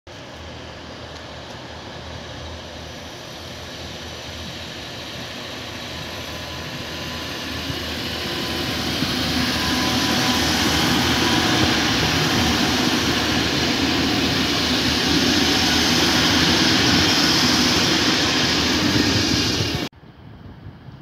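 Trains moving through a station, including an alex train's diesel locomotive: a steady rumble and rail noise that grows louder up to about halfway through, holds loud, then cuts off suddenly just before the end.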